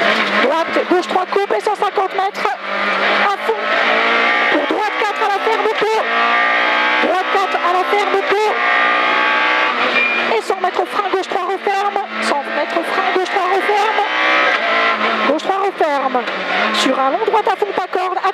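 Peugeot 106 F2000 rally car's engine heard from inside the cabin under full throttle. The revs climb in long pulls and fall back at each gear change.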